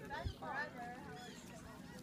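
Faint gull calls: a few short rising-and-falling cries and one brief held note in the first second or so.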